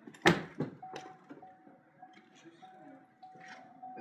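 A car door unlatched and pulled open: one sharp loud clunk about a quarter second in. It is followed by a faint steady high tone with small breaks.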